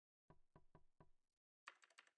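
Near silence broken by faint, short clicks: about five evenly spaced ones in the first second, then a quicker, irregular run near the end.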